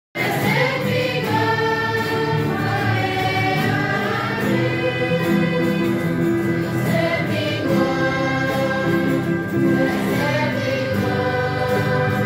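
A choir singing a hymn in long held notes.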